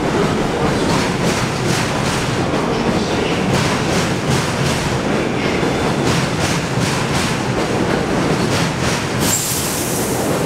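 Bombardier R62A subway cars rolling past a station platform: a steady rolling rumble with wheels clicking over rail joints a few times a second.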